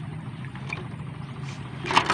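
A low, steady engine drone in the background, with a brief noisy rustle near the end.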